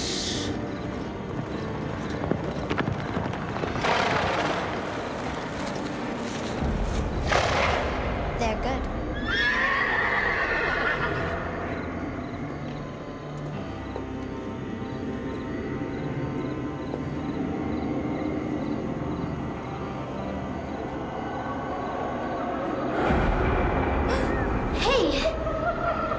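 A horse whinnying about ten seconds in, with hoofbeats and two short rushing noises before it, over tense background music.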